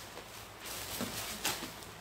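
Faint rustling of clothing being handled, with a couple of light knocks about a second in and halfway through.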